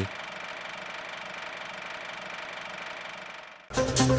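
A steady hiss with a faint, even hum under it, then electronic music cuts in suddenly near the end.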